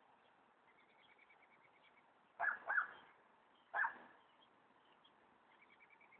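Three short, sharp animal calls: two in quick succession, then a third about a second later. Faint high bird chirping goes on behind them.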